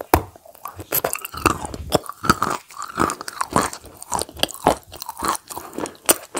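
Close-miked ASMR eating: biting into a spoonful of food and chewing, with a dense run of quick, sharp mouth clicks and smacks.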